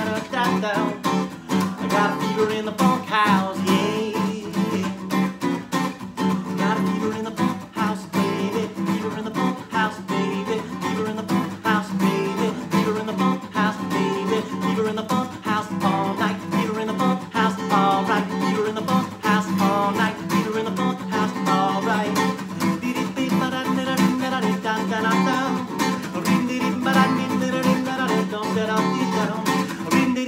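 Acoustic guitar strummed in a steady rhythm.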